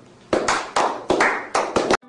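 A small group of people clapping: about eight or nine irregular handclaps, each with a short ring-out, cut off abruptly at the end.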